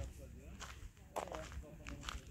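Footsteps walking on a dirt campsite track, a few soft scuffing steps, with faint voices talking in the distance.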